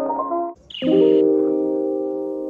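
Background music: a melody breaks off about half a second in, then a short high chirp gives way to a held chord that slowly fades.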